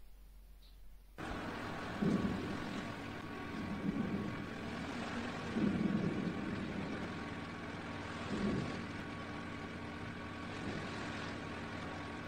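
Anak Krakatoa volcano erupting: a steady rumbling roar that starts about a second in, with several deeper surges.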